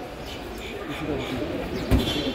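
Mixed chatter of a gathered crowd's voices, with a single thump near the end.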